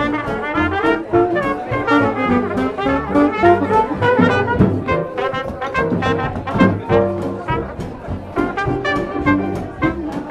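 Live hot jazz band: a trumpet plays a moving melody line over drums with cymbal and a steady swing beat from the rhythm section.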